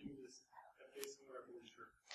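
Near silence in a lecture room, with faint speech off the microphone and a small click about a second in.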